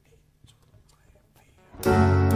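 A live band comes in suddenly with the opening chord of a slow song near the end, after a near-silent pause with only faint stage noises.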